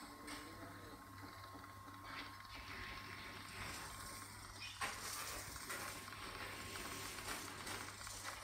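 Faint hiss over a steady low hum, with a few sharp knocks of hammers striking stone, the loudest about five seconds in.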